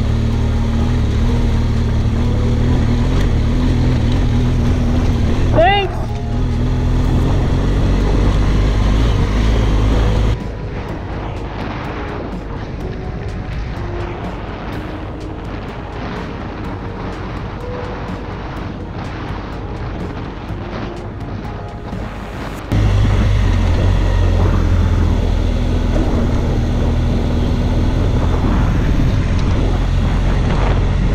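Adventure motorcycle engine running under way, with wind noise on the camera microphone. The sound cuts abruptly to a quieter, duller stretch about ten seconds in and comes back just as abruptly about eight seconds before the end.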